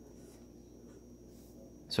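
Quiet room tone with a faint steady low hum and a thin, faint high-pitched tone; no distinct event.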